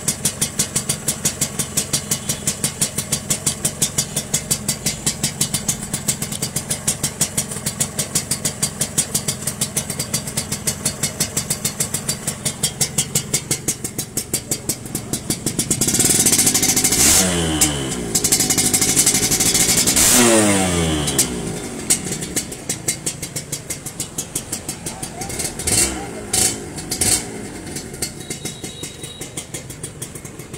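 Suzuki RGV Sport 120 two-stroke single-cylinder engine idling with a steady pulsing beat through its exhaust. About halfway through it is revved up twice, the pitch sweeping back down each time, then given a few short throttle blips near the end.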